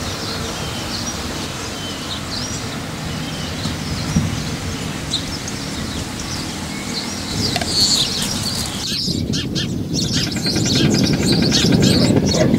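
Small birds chirping and twittering, short high calls over a steady background noise. About nine seconds in the chirping becomes denser and a louder rushing noise rises beneath it.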